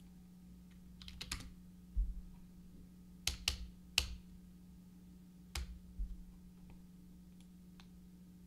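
Computer keyboard keys typed in a few short clusters of clicks, entering a ticker symbol to switch the chart, with a dull low bump about two seconds in. A steady low electrical hum runs underneath.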